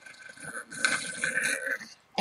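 A woman's long, breathy sigh with a thin whistle running through it, louder in its second half.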